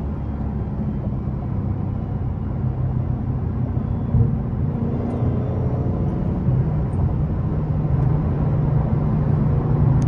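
Supercharged 6.2-litre Hemi V8 of a modified 900 hp Dodge Hellcat, heard from inside the cabin, cruising at highway speed: a steady low engine drone with road noise, growing a little louder in the second half.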